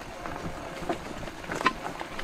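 ENGWE X20 fat-tire e-bike rolling over a rough sandy trail, with a low rumble and irregular clacks from its front suspension fork, the loudest about one and a half seconds in. The clacking is the fork's known noise problem.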